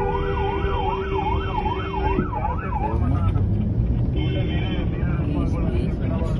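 Police siren warbling up and down about twice a second for the first three seconds, over a car horn held until about two seconds in. Another shorter horn sounds about four seconds in, over steady city traffic noise.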